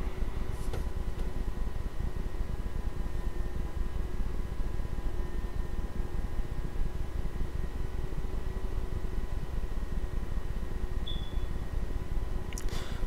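Steady low room hum and hiss with faint steady tones running through it, and a short faint high beep near the end.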